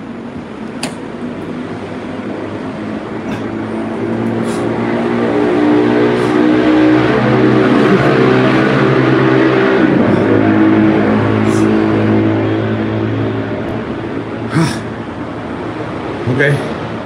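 A motor vehicle's engine hum swells and then fades over about ten seconds, as a vehicle passes nearby. A few short knocks come through, the clearest near the end.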